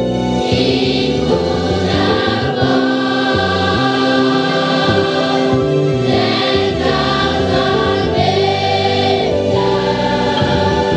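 Mixed children's choir singing a gospel hymn together, with long held notes.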